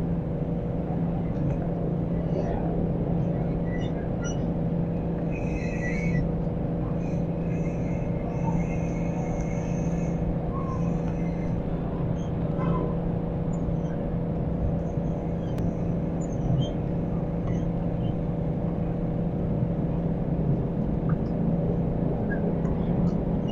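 Steady low rumble of street traffic with a constant hum and no sharp events. A few faint high chirps come through between about five and ten seconds in.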